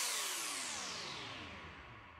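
The fading tail of an electronic music track after its last beat, a reverberant wash with several tones gliding downward, dying away to near silence by the end.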